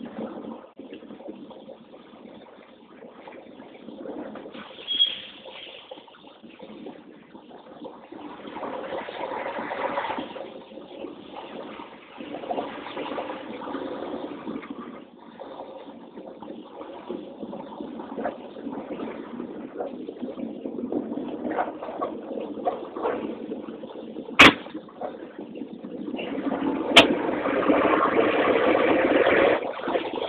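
In-cab noise of a long-hood semi truck rolling slowly, its engine and tyres making an uneven rumble that grows louder toward the end. Two sharp clicks cut through it about two and a half seconds apart, shortly before the end.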